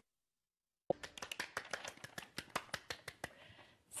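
Dead silence for about a second, then roughly two seconds of light, irregular taps or claps, a few every second, fading out before the end.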